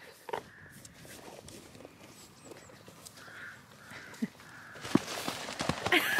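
Soft footfalls on paddock grass, becoming louder and busier in the last second.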